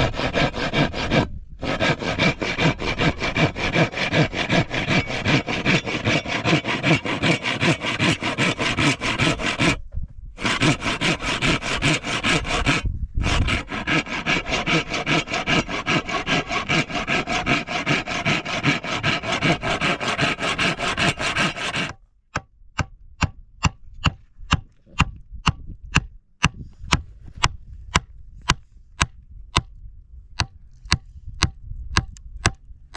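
Handsaw cutting a wooden plank with rapid back-and-forth strokes, stopping briefly three times. About 22 s in it gives way to a hammer driving nails into wooden boards, with sharp separate blows about two a second.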